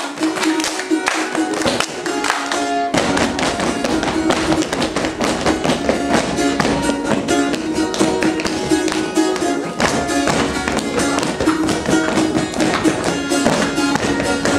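Lively instrumental Russian folk dance tune with a fast strummed or plucked rhythm, played for a dance, with the dancers' feet tapping and stamping along; the sound fills out in the low end about three seconds in.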